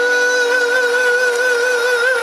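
A male singer holding one long high note with a slight vibrato over a backing track, the closing note of a J-pop ballad.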